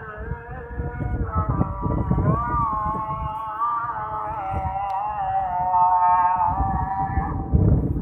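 Fajr azan (Islamic dawn call to prayer) from a mosque loudspeaker: a man's voice chanting long, held notes that bend slowly up and down, with a low rumble underneath.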